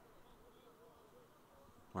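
Near silence: faint ballpark ambience with a low murmur of distant voices, and a commentator's voice coming in right at the end.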